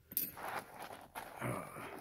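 A sharp click, then faint rustling and handling noise of small items being moved in a pocket-sized kit bag.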